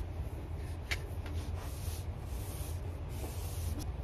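Paintbrush brushing latex paint onto a wall, a run of soft rubbing strokes over a steady low hum.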